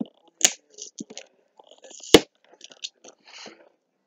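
Packaging of a boxed anime figure being handled and opened by hand: scattered crinkles and clicks, with a sharp snap about two seconds in.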